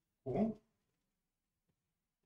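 A man's voice making one brief syllable, its pitch rising, about a quarter second in; the rest is near silence.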